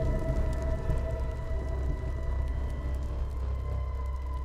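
Eerie horror film score: a sustained drone of several steady held tones over a deep continuous low rumble.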